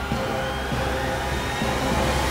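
Dramatic background score: a sustained drone of held tones with a low hum underneath.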